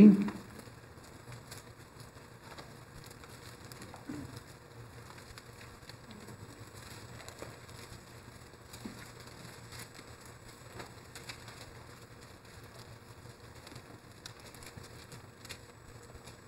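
Faint, scattered rustling and crackling of Bible pages being turned as people look up a passage, over a faint steady low hum.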